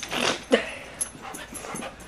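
A pet dog making short vocal sounds: a breathy huff near the start, then one short, sharp sound about half a second in that falls in pitch, followed by a faint click.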